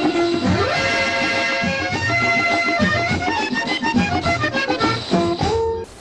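Accordion-led orchestral accompaniment from a 1959 Hindi film song soundtrack, an old mono-era recording: held notes and then a quicker run of melody. The music cuts off suddenly near the end.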